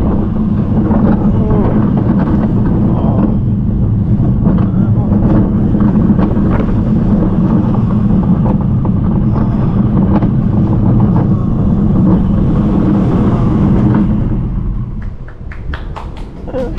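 Vekoma Family Boomerang coaster train running down its drop and through the curves: a steady loud rumble of wheels on the steel track mixed with wind on the microphone. It eases off near the end as the train slows into the station, with a few sharp clicks.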